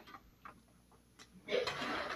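A few light clicks, then a short soft rustle starting about one and a half seconds in: markers being handled and picked out of a clear plastic container.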